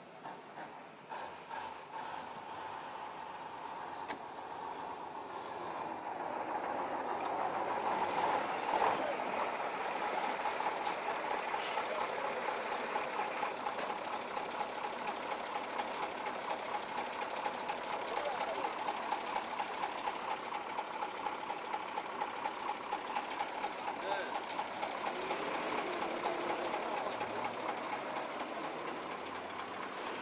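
A heavy truck's diesel engine running steadily, growing louder over the first several seconds and then holding at a constant speed with a fast, even pulse.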